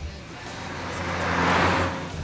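A car driving past, its engine and road noise swelling to a peak near the end, over background music.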